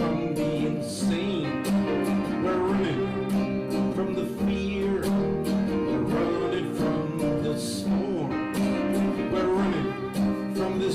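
Live acoustic music: a violin plays a wavering melody over an acoustic guitar and a Yamaha electric keyboard, playing steadily with no break.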